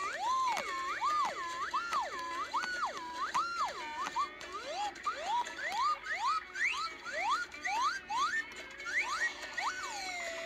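Slide whistle played in quick swoops: first a run of up-and-down arches, then, from about four seconds in, a string of short rising glides, each cut off at the top, about two a second.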